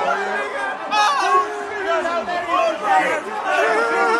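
Many people talking and shouting excitedly over one another, an arena crowd's chatter with several voices overlapping and no clear words.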